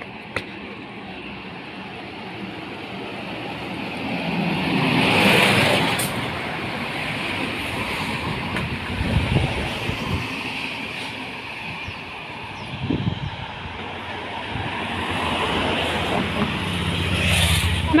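Cars passing on the road alongside, tyre and engine noise swelling and fading: one goes by about five seconds in, another near the end.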